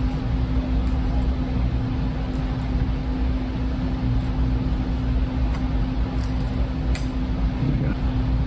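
Steady hum and hiss of room air conditioning, with a constant low tone. A few faint clicks come from a table knife spreading cream cheese on a bagel.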